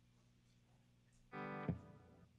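A single electric guitar chord sounded through an amplifier about a second and a half in, ringing briefly and then cut off with a low thud. A faint steady amplifier hum lies underneath.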